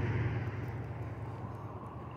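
A passing motor vehicle's low rumble, fading steadily away as it moves off down the road.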